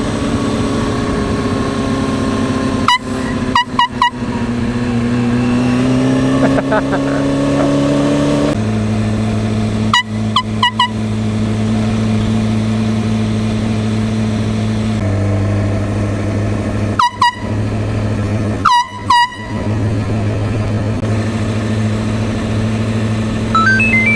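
Handheld canned air horn sounded in four bursts of two to four quick blasts. Underneath, a 2003 Kawasaki ZX-6R's inline-four engine runs at low speed, its pitch stepping up and down.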